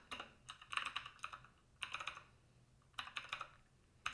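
Computer keyboard being typed on in four short bursts of quiet key clicks, about a second apart, with pauses between.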